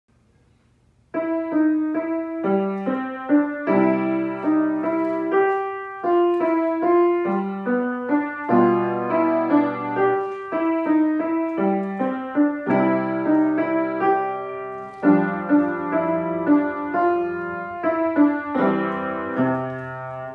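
Grand piano playing a simple waltz, a melody over held bass notes, starting about a second in.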